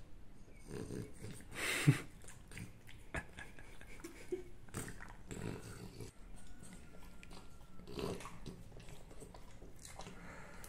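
A French bulldog eating a small treat from a person's palm: close, irregular sniffing, licking and chewing sounds, with one loud short burst about two seconds in.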